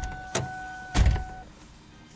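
A steady electronic tone from the drive-in ordering speaker, cutting off suddenly about a second and a half in. Three dull thumps fall over it, the loudest about a second in.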